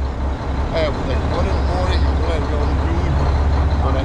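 Dump truck's diesel engine idling, a steady low rumble, with faint talk over it.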